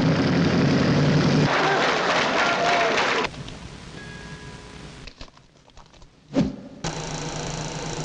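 Motorcycle engine running loud as a rider circles a wooden wall-of-death drum. After about three seconds it cuts off abruptly, leaving quieter, broken sound and a single short thump about six seconds in.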